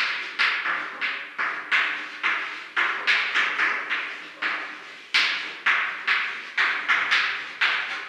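Chalk writing on a chalkboard: a rapid series of sharp taps and short scratchy strokes as each letter is written, about two a second, with a brief pause about halfway through.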